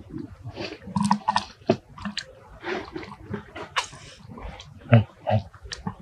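Infant macaque suckling at its mother's nipple: irregular short wet sucking and smacking sounds.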